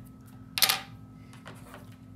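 Small metal scissors set down on a wooden tabletop: a short sharp clatter about half a second in, followed by fainter handling knocks.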